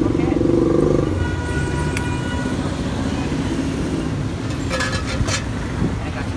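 Steady street traffic rumble from passing vehicles, with a few sharp clicks about five seconds in.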